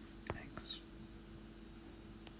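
A faint tap of a stylus on a tablet screen about a third of a second in, followed by a short breathy hiss, over a low steady hum.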